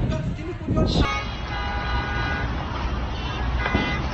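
Vehicle horns sounding in held tones, once for just over a second starting about a second in and again near the end, over a steady low rumble of traffic and wind.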